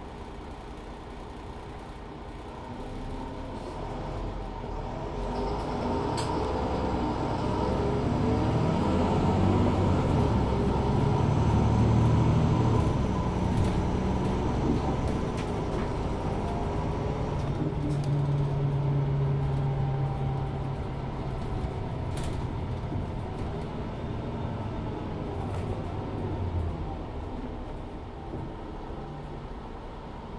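Mercedes-Benz Citaro 2 LE city bus with a Daimler OM 936 h six-cylinder diesel, heard from inside as it pulls away and accelerates. The engine grows steadily louder to a peak about twelve seconds in, holds a steady drone, then eases off over the last few seconds. Two short sharp clicks stand out, one early and one past the middle.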